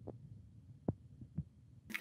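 Faint low hum with a few soft, sharp clicks scattered through it, the loudest about a second in.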